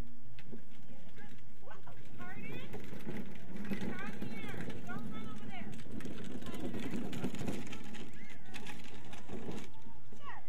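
High-pitched children's voices calling and chattering, with no clear words.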